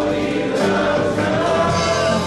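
Live contemporary worship music: several vocalists singing together over guitars and keyboard, with sustained held notes.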